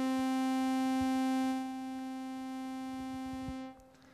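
A single middle C from Sonic Pi's sawtooth synth (`use_synth :saw`, play 60), a buzzy tone rich in overtones. It swells in, drops to a quieter held level about a second and a half in, and fades out near the end, following its attack, decay, sustain and release envelope.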